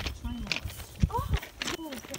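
Indistinct talking, with a couple of low thumps about a second in.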